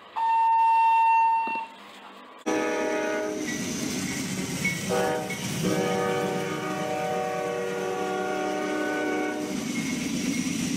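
An electronic elevator tone, one steady beep of about a second and a half. Then a Norfolk Southern diesel locomotive's multi-chime air horn sounds a chord: a blast of about a second, a short blast about five seconds in, and a long blast of about four seconds.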